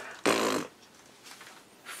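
A short, rough, raspy vocal burst, like a strained grunt, lasting about half a second near the start, then quiet.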